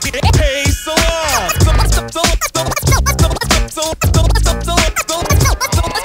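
Hip hop track with no rapping: a beat with deep, regular bass hits under turntable scratches that slide up and down in pitch, most plainly in the first second or two.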